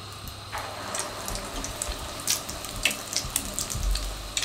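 An egg-coated potato and keema cutlet goes into hot oil in a frying pan about half a second in. The oil starts sizzling at once, with spitting crackles that come more often toward the end.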